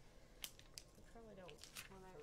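Scissors snipping heat transfer vinyl: a few faint, sharp clicks spread through the moment.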